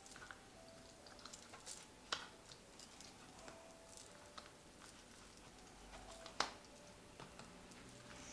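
Faint, scattered taps and clicks of tarot cards being picked from a spread and laid down on a cloth-covered table, with two sharper clicks about two seconds in and again past six seconds.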